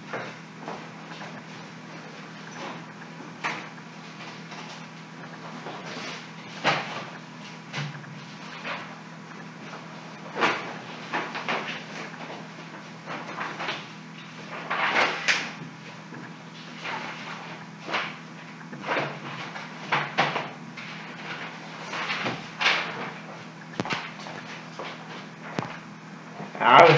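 Irregular knocks, clicks and rustles of objects being handled and moved about in a small room, with a denser burst of them about halfway through, over a steady low hum.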